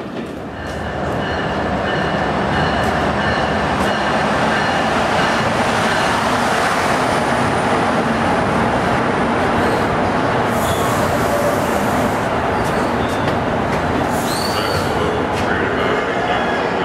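New Jersey Transit commuter train of MultiLevel double-deck coaches rolling into the station past the platform: a steady, loud rumble of wheels on rail that builds about a second in. Brief high wheel squeals come near the end.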